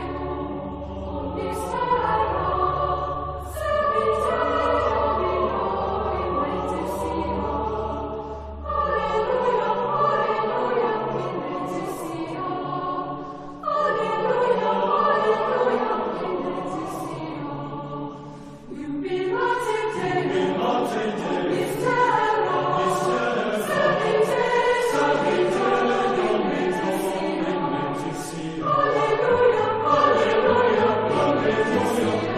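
Choir singing sacred music in long phrases of several seconds, with short breaks between them. A low held note sounds underneath for the first nine seconds or so.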